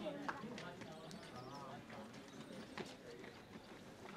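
Faint voices of people talking, with a few sharp clicks scattered through; the sharpest click comes just after the start.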